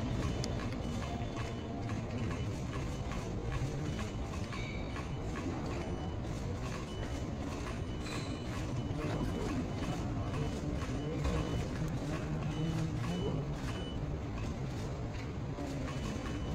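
Steady busy-hall hubbub with many short sharp clicks, camera shutters at a photo call, and a short high beep that repeats every second or so through the middle stretch.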